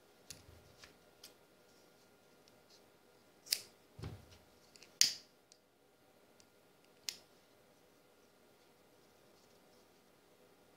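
A handful of sharp clicks and snips: three faint ones in the first second or so, then louder ones about three and a half, five and seven seconds in. They come from scissors trimming the paracord ends and a lighter being struck to melt the cut ends.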